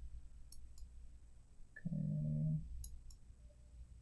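Faint computer mouse clicks while a value is set in software: two in the first second and two more about three seconds in, over a low steady hum.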